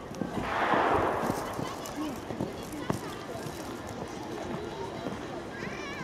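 Faint, indistinct background voices of people talking over outdoor ambience, with a brief rushing burst of noise early on and a single sharp click about three seconds in.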